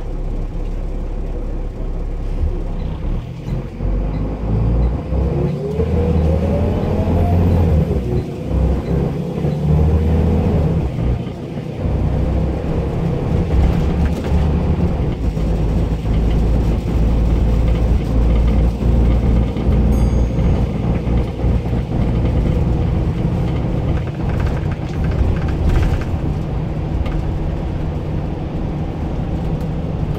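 Single-deck bus engine and drivetrain heard from inside the passenger saloon, with a deep rumble throughout and a whine that rises in pitch a few seconds in as the bus gathers speed, then settles into steady running.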